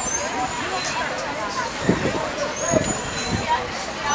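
Outdoor street ambience: a steady hum of traffic with faint voices in the background.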